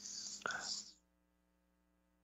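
Faint breathy, whispered voice sound from a man at the microphone, with a mouth click about half a second in. It cuts off abruptly just before a second in, leaving near silence.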